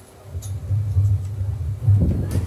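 Low, uneven rumble of wind buffeting outdoor microphones, swelling about half a second in and peaking near the end.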